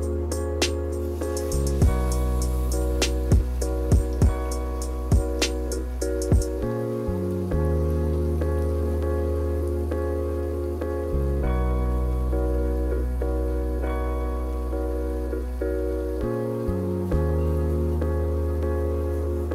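Hot oil sizzling and bubbling as batter-coated mini corn dogs deep-fry, under background music of sustained chords that change every few seconds. Sharp clicks come through in the first six seconds or so.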